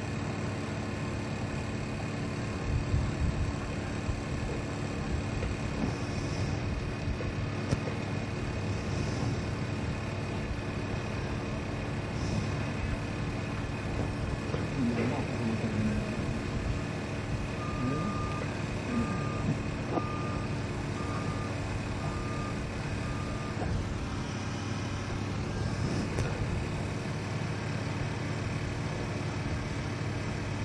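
A heavy construction vehicle's engine running steadily, with its reversing alarm beeping about six times, once a second, past the middle.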